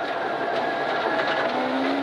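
Ford Escort Mk1 rally car's engine running at a steady pitch, heard from inside the cabin with gravel road noise; a lower steady note joins about halfway through.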